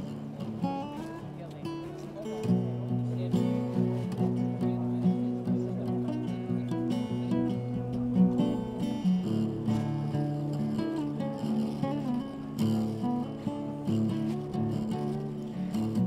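Acoustic guitar playing a slow tune of plucked notes, with a fuller run of low notes coming in about two and a half seconds in.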